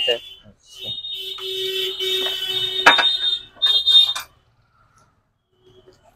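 Electronic anti-theft alarm of a motorcycle security lock sounding a shrill, steady high-pitched tone for about three seconds from about a second in, with a sharp click partway through. It breaks off and gives one short final burst before going quiet.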